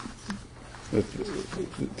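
Speech only: a man pausing mid-sentence, with a few quiet, hesitant voice sounds about a second in.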